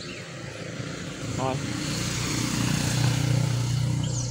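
A passing motor vehicle's engine growing louder over the first three seconds, a low steady hum with a rush of noise above it.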